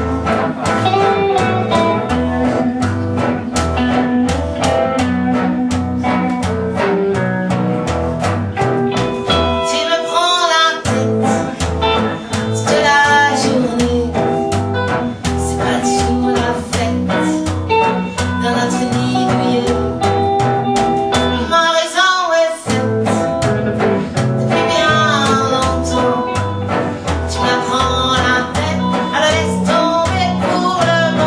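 Live swing-blues band playing: upright double bass walking a steady plucked beat under guitars, with a woman singing. The bass drops out briefly twice, about a third and two thirds of the way through.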